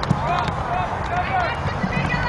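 Distant voices calling out in short, high-pitched shouts, with a single light knock just after the start.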